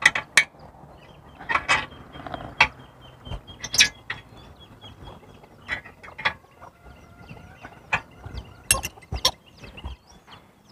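Nuts and bolts on a metal satellite dish mount being tightened, making irregular metallic clicks and knocks. This locks the dish's aim after the signal has been peaked.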